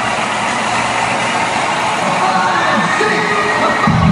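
Large arena crowd cheering and clamouring, the noise building steadily as it swells. Music with a heavy beat starts right at the very end.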